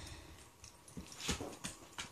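A dog fetching a rope toy on carpet: faint, short taps and rustles from its feet and the toy, a few of them in the second half.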